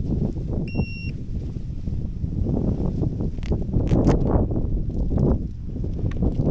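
Wind buffeting the microphone in a gusty low rumble, with a single short electronic beep about a second in and a few light clicks a little past the middle.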